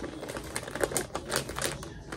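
Zip-top plastic bag being pressed shut by hand, its seal giving a quick, irregular run of clicks along with some plastic crinkling.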